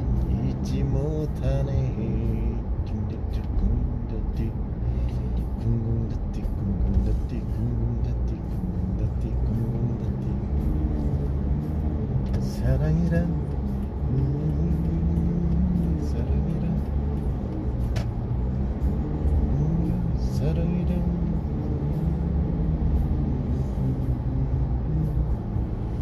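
Steady road and engine noise inside a moving car's cabin, with an indistinct voice underneath.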